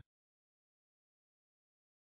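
Digital silence: a gap between spoken words.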